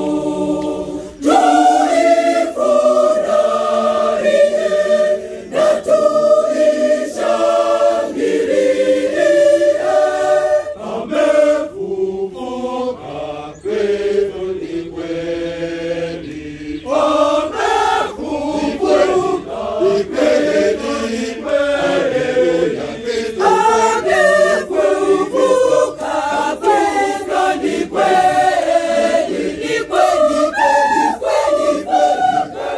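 A Catholic church choir, mostly women's voices, singing together.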